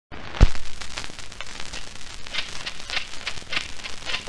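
Surface noise of a 78 rpm shellac record running through its lead-in groove before the music: steady crackle and scattered clicks, with a loud pop about half a second in.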